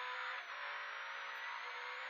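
Škoda 130 LR rally car's rear-mounted four-cylinder engine heard from inside the cabin, running hard on a special stage, with a brief dip about half a second in as it shifts from second to third gear.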